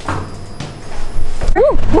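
Wind blowing across the microphone outdoors, starting about a second in and loud from then on, with a woman's short exclamation, "woe", near the end.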